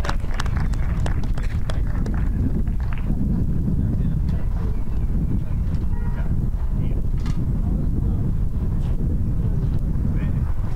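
Wind buffeting an outdoor microphone as a steady low rumble, with scattered light knocks and faint voices in the background.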